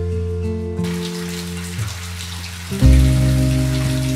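Soft acoustic guitar music with long sustained notes. From about a second in, the steady hiss of water pouring from a bath mixer tap into a roll-top bathtub.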